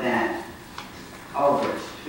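Speech in a meeting room: a voice talking in two short phrases, with a faint click just under a second in.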